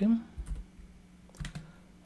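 A few keystrokes on a computer keyboard as code is typed, sparse and spaced out: a couple a little under half a second in and another couple about a second and a half in.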